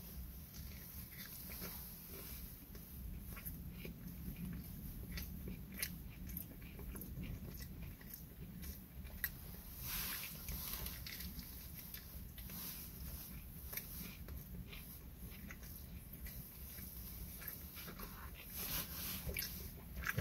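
A person biting into and chewing a mouthful of sub sandwich: faint, irregular soft crunches and wet mouth clicks over a low steady hum.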